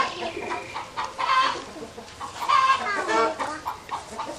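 Chickens clucking: a few short calls spaced about a second apart, one with a bending pitch near the end.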